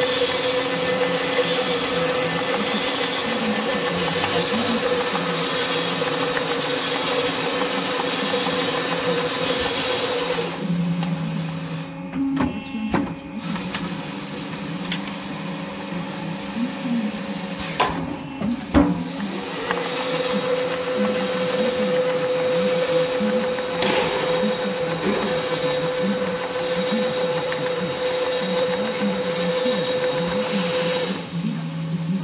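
Spiro automatic corrugation unit running, its rollers pressing corrugations into a turning sheet-metal spiral duct: a steady mechanical whirr with a whine. A third of the way in the whine drops away for several seconds, with a few sharp clicks, then it resumes and runs steady again.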